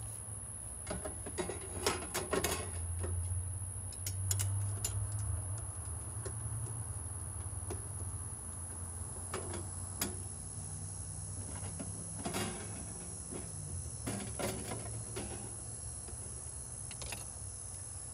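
Sheet-metal cover of a breaker panel being fitted back onto the box: scattered light metallic clicks, scrapes and knocks, over a steady low hum.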